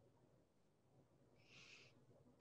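Near silence between speakers, with one brief faint hiss near the end.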